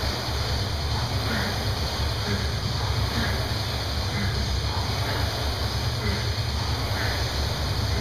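A rowing machine's flywheel whirring steadily under hard rowing, with a surge roughly every second and a half as each stroke is pulled.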